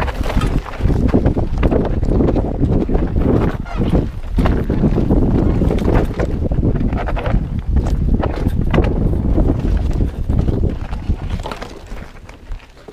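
Mountain bike riding over a rocky trail: tyres and frame clattering over rock, with a dense rumble and many sharp knocks from the bike and the ground. It eases off about eleven seconds in.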